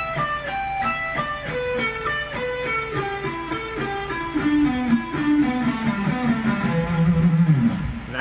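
Charvel electric guitar playing a slow descending pentatonic run, two notes per string, each note picked separately. The run steps down from high notes to a held low note near the end.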